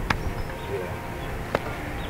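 Two sharp clicks about a second and a half apart, over a steady low rumble of outdoor background noise.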